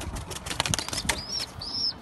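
Young tippler pigeon flapping its wings hard in a quick flurry of wing claps for about a second, then a few short, high chirps.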